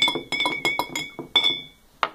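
Metal spoon stirring liquid in a glass tumbler, clinking against the glass about ten times in quick succession with a bright ringing tone. The clinking stops about a second and a half in.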